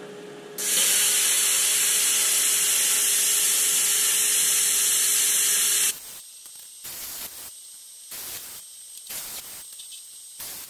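Lotos LT5000D air plasma cutter cutting through the sheet steel of a drum. The arc and air jet make a loud, steady hiss with a hum underneath, which starts about half a second in and cuts off suddenly about six seconds in. Short, irregular bursts of quieter hiss follow.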